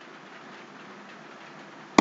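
Steady low hiss of room tone and microphone noise, with no distinct sound events.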